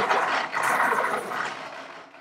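Electric pencil sharpener running, a steady grinding noise that fades out near the end.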